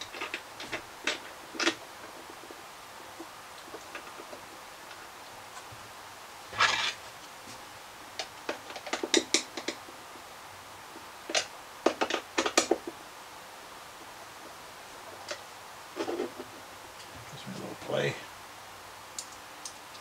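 Intermittent light clicks, taps and rattles of small handle hardware and tools being handled and fitted on a countertop, in a few short clusters with quiet in between.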